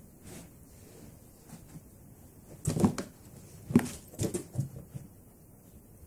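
A cat pouncing and scrambling around a cardboard box on carpet: a cluster of dull knocks and scuffs about two and a half seconds in, then a second, longer run of them around four seconds in.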